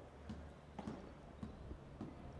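Padel ball being struck by rackets in a rally: a few faint, irregular knocks over a steady low hum.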